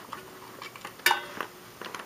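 A few light clicks and taps from an animated saxophone Santa figure being handled by hand, the sharpest about a second in.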